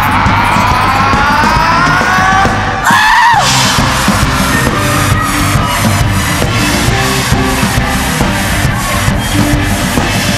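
Live rock band: sliding, wavering tones over the band for the first few seconds, then a brief break and an upward swoop about three seconds in, after which the full band with drum kit comes in with a steady, driving beat.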